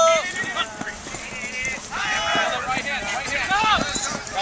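Shouts and calls from several people on the field, too far off to make out, loudest at the very start and again over the last two seconds, with the dull thuds of players' feet running on grass.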